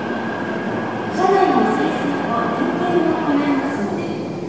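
Odakyu VSE Romancecar electric train rolling slowly into the platform, a steady running noise with a thin constant tone over it.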